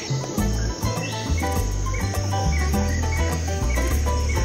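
Background music with a bass line stepping between notes and a melody above it, over a steady high-pitched chirring.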